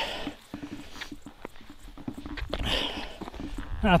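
A hiker's footsteps on a grassy mountain trail, as scattered soft clicks and scuffs, with his breathing heard twice as he walks.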